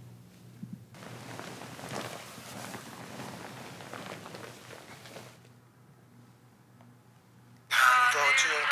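Faint rustling for the first few seconds, then quiet. Near the end a man singing with music starts abruptly and loudly.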